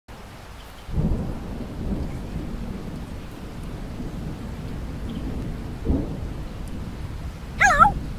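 Thunderstorm sound effect: steady rain with rolls of thunder, one about a second in and another near six seconds. A short wavering high-pitched call comes just before the end.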